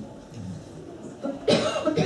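A single cough, sudden and loud, about one and a half seconds in.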